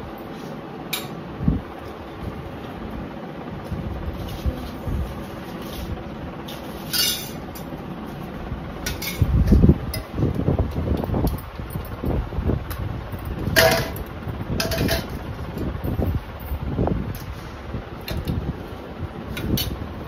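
Steel thalis and bowls clinking a few times as they are set down and handled on a concrete floor, over a steady background hum. Low rumbling thumps from the phone being moved about, loudest about halfway through.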